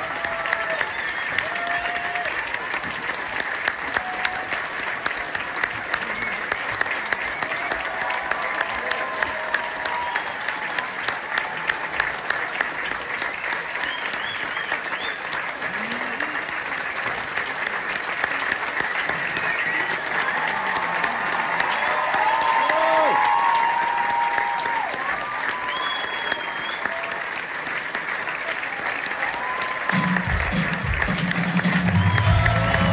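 A large theatre audience applauding, a dense, steady clapping with scattered whoops and shouts on top. The voices come more often in the second half, when the applause swells a little.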